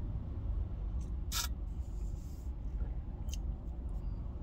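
Steady low rumble of a car's engine and road noise heard inside the cabin, with a brief sharp click about a second and a half in and a fainter one near the end.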